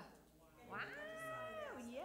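A single high, drawn-out cry held for about a second, dropping in pitch as it ends.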